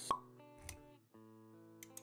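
Animated-intro sound effects over music: a sharp pop just after the start is the loudest sound, followed by a softer low thud. After a short gap at about a second in, held musical notes come back with a few quick clicks near the end.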